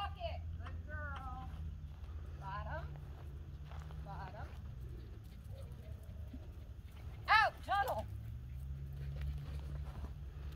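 Small dog barking in short high yips as it runs an agility course, several scattered barks and then a loud double bark about seven seconds in. A steady low rumble of wind lies underneath.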